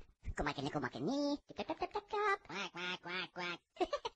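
Dialogue from the anime's own soundtrack: a young woman's voice speaking several short phrases with brief pauses, much quieter than the surrounding narration.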